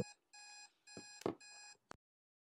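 Faint electronic timer beeping in short repeated bursts, about two a second, marking the countdown reaching zero at the end of the interval. A few soft knocks come in among the beeps, the loudest about a second and a quarter in.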